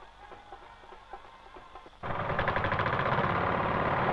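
Soft background music, then about halfway through a sudden cut to a much louder engine running steadily with a fast, even pulse.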